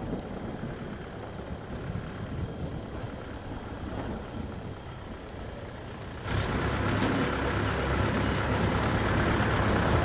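Motor vehicle engine running: a low rumble at first, then a sudden jump to a louder, steady engine hum about six seconds in.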